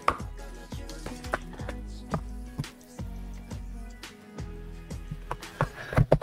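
Cardboard album box being opened and handled by hand: irregular rustling, tapping and scraping of card and plastic wrap. Faint background music runs underneath.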